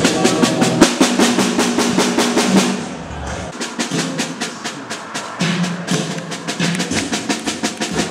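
Snare drum struck in fast repeated strokes, about eight a second, loud for the first three seconds and then softer, over a faint low sustained tone.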